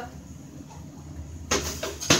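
A plastic water bottle, flipped in a bottle-flip challenge, lands with a sudden knock and clatter about a second and a half in, after a stretch of quiet room tone; a second smaller hit follows near the end.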